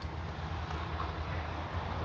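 Low steady hum of an idling vehicle engine, with a faint tick about a second in.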